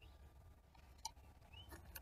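Near silence, with a few faint clicks and a short faint chirp near the end.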